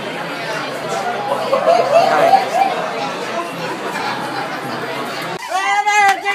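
Busy restaurant chatter, many voices at once, with a nearby laugh and a short "hi". Near the end the sound cuts suddenly to a single louder, clearer voice.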